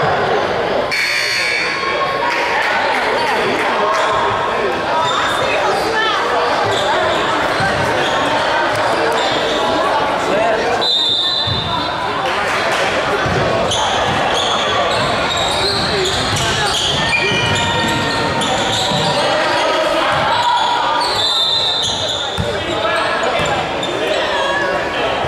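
Basketball game in a gym: a crowd of voices talking and shouting, echoing in the hall, with a basketball bouncing on the hardwood court.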